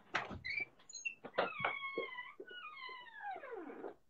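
Drawn-out animal calls: a few short high chirps, then a pitched call that holds steady for about a second, then a longer one that glides steadily down in pitch.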